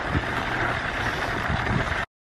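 Baby stroller being pushed over snowy ground, its wheels making a steady rolling noise.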